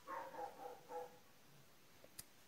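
Three short, faint, high-pitched calls from an animal in the background, all within about the first second.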